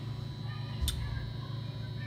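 A steady low electrical hum of room tone with a single short, sharp click a little under a second in.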